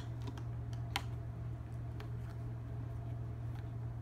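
Jigsaw puzzle pieces being handled and set down on a hard surface: a few scattered light clicks and taps, the sharpest about a second in, over a steady low hum.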